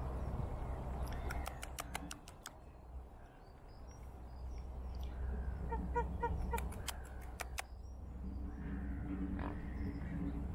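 Two quick bursts of sharp clicks, six or seven in each, one early and one about six and a half seconds in, typical of a camera shutter firing in burst mode. Birds call faintly around it, with one short, rapidly repeated call just before the second burst.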